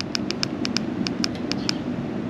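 TIDRADIO TD-H8 handheld radio's menu key pressed over and over, a quick run of short clicks about seven a second, as the menu is scrolled through item by item.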